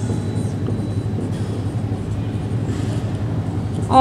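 A steady low rumble of background noise runs throughout, with faint scratchy strokes of a marker writing on a whiteboard.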